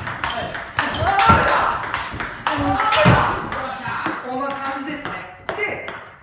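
Table tennis rally: a celluloid-type ball clicking off rubber bats and the table in quick succession, several hits a second, during a counter-attack drill, with voices over it.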